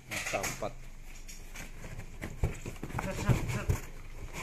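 Cardboard bicycle frame box being pulled open by hand: rustling with several dull knocks of the cardboard in the second half.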